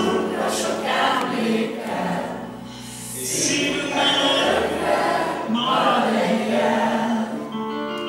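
A group of teenage students singing together as a mixed choir, many voices at once. Near the end, sustained piano notes come in.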